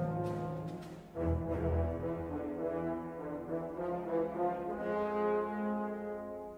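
Orchestral film score with brass holding long sustained chords. About a second in, the music drops away briefly, then comes back with a sudden low swell and carries on with the brass.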